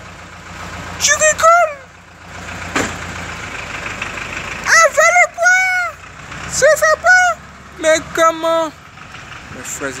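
A man's voice in four short, high-pitched exclamations, with no clear words, over a steady low background rumble.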